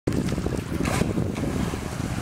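A 1/8-scale radio-controlled hydroplane taking off across the water, its motor running and hull throwing spray, with wind buffeting the microphone.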